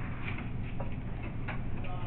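Pen writing on paper: a few light, irregular ticks and scratches as the tip strikes and lifts, over a steady low hum.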